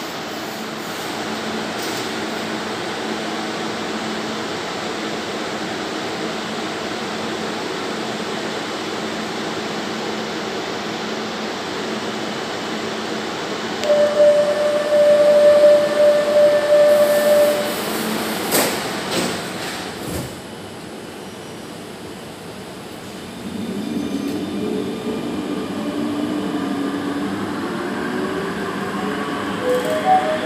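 Barcelona Metro Line 10 car at a station stop. The car hums steadily, then a single steady door warning tone sounds for about four seconds, and a knock follows as the doors shut. After a short quieter pause the train pulls away, its motor whine rising as it accelerates.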